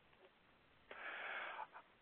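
A man's audible breath, a short intake of air about a second in, lasting under a second, taken just before he resumes speaking.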